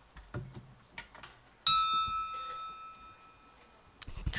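A single bright chime note struck once about one and a half seconds in, ringing out and fading over about a second and a half, after a few faint knocks and rustles.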